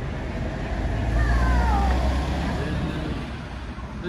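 A motor vehicle passing on the road: a low rumble that swells about a second in and then fades, with a falling whine as it goes by.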